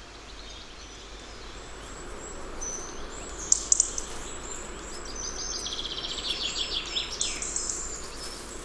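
Small birds chirping in quick series of high notes and trills, starting a couple of seconds in, over a faint steady outdoor hiss, with a few sharp clicks about three and a half seconds in.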